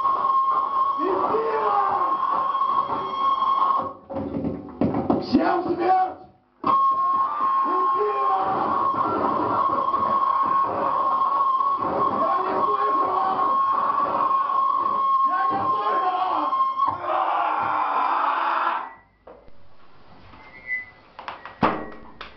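Live harsh noise music from electronics: a loud, dense, distorted wall of noise with a steady high whine running through it. It cuts out briefly twice and stops abruptly about nineteen seconds in, leaving a few sharp clicks.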